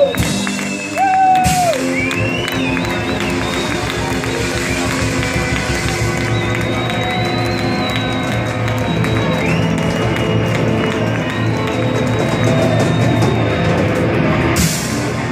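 Live rock band playing loud, with electric guitars and drums, over a cheering crowd.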